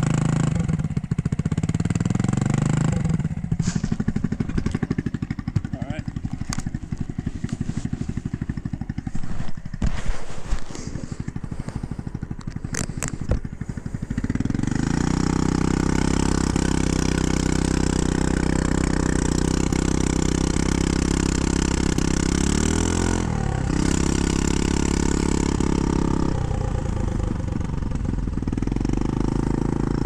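GY6 150cc four-stroke single in a Honda Ruckus scooter, through a straight-pipe exhaust, idling with a fast pulsing beat and a couple of sharp clicks. About halfway through it pulls away and runs at a steady, higher pitch, with a short swing in revs near the end.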